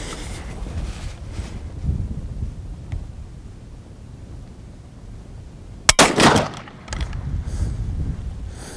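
A single loud shot from a Martini-Henry I.C.1 carbine firing a .577/450 cartridge about six seconds in, followed by a ringing echo. The round goes off late after the trigger pull: a hangfire.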